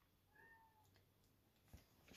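Near silence: room tone, with one faint, short, pitched call about half a second in.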